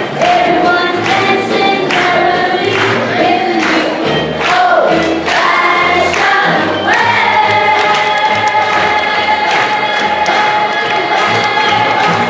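A group of school students singing a Christmas song together over accompaniment with a steady beat, ending on a long held note from about halfway through.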